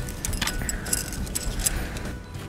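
Metal tent pegs jangling and clinking against each other as they are handled in the hand: a scatter of quick, light metallic clinks.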